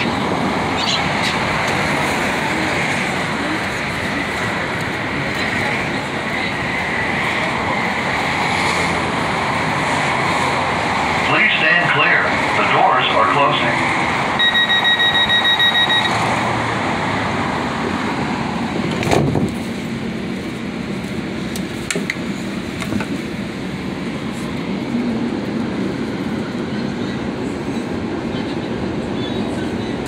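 The interior of a Metro light-rail car standing at a station, with the car's steady running hum. About halfway through, the door-closing chime beeps rapidly for about a second and a half. A single knock follows a few seconds later as the train gets under way.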